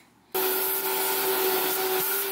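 Vacuum cleaner running steadily with a constant whine as its nozzle is worked over carpet. It starts suddenly about a third of a second in, after a brief silence.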